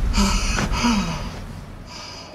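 A man gasping for breath: two short, breathy gasps in quick succession in the first second, then the sound falls away.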